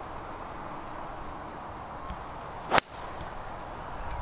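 A golf driver striking the ball off the tee: one sharp, short crack of the clubhead about three-quarters of the way in.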